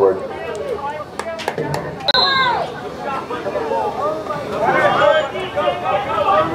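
Players and spectators shouting across a lacrosse field, with a louder shout about two seconds in. A few sharp clacks of lacrosse sticks come in the first two seconds.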